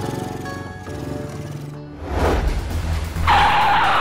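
Background music, then about two seconds in a vehicle approaches, and near the end tyres screech loudly under hard braking as a car and a motorbike nearly collide.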